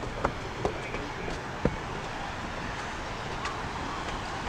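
Footsteps knocking on a wooden boardwalk, a few in the first two seconds and then stopping, over a steady outdoor wash of wind and distant beach voices.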